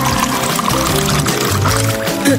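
Water poured from a drinking glass over a person's head, splashing down, under steady background music.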